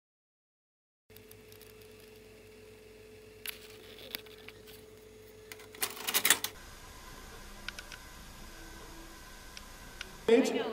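A Toshiba VCR working, starting after a second of silence: a steady motor hum with a faint held tone, a couple of sharp clicks, then a burst of clicking and clunking from the tape mechanism about six seconds in.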